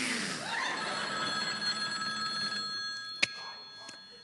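A person drawing a big, deep breath through the mouth, followed by a steady high ringing of several pitches at once that fades out, and a single click near the end.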